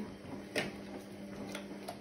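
XL bully dog eating from a metal bowl in a raised wire stand, with a few sharp clicks against the bowl, one about half a second in and two more near the end.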